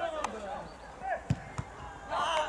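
A football being struck on the pitch: a sharp thud of a kick about a second and a half in, followed closely by a second, lighter knock, with players shouting.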